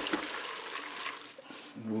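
A spoon stirring freshly pressure-cooked spaghetti in a thin sauce in a multicooker pot: a wet, sloshing noise that fades out about a second and a half in.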